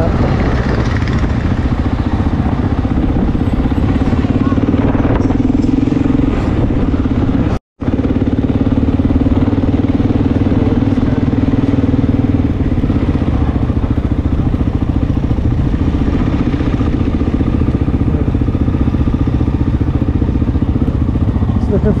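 Honda XR600R single-cylinder four-stroke engine running steadily while riding at town speed. The audio cuts out for a moment about eight seconds in.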